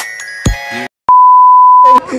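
An edited-in playful music cue of bell-like mallet tones with a deep bass thump about half a second in, cutting off just before a second in. After a brief silence comes a loud, steady, high-pitched bleep tone of the kind used to censor a word, which runs until speech returns.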